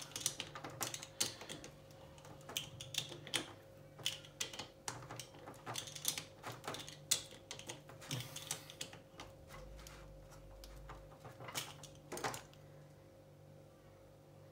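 Irregular light metallic clicks and ticks from a hand driver turning the crankcase bolts on a small two-stroke outboard block, as the bolts are run down by hand to pull the crankcase halves together. The clicking stops shortly before the end.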